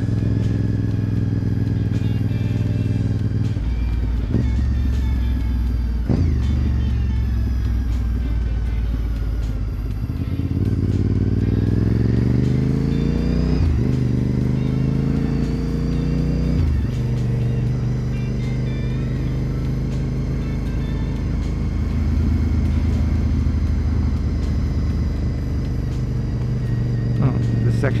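2004 Honda RC51 SP2's V-twin engine under way: it climbs in pitch twice as the bike accelerates around the middle, each climb ending in a sudden drop at an upshift, then settles to a steady cruise.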